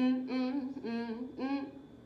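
A woman humming "mm-mm" a cappella between sung lines, in about four short notes that fade away near the end.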